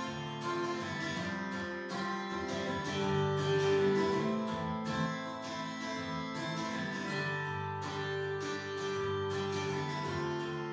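Strummed acoustic guitar track playing steadily, heard on its own during mixing.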